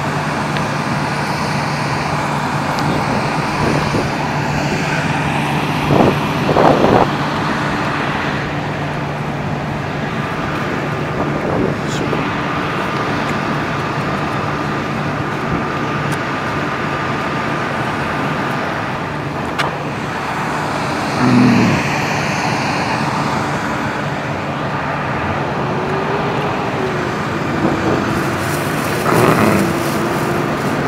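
City street traffic: a steady wash of road noise from cars, with a low engine hum through the first several seconds and a few brief louder sounds along the way.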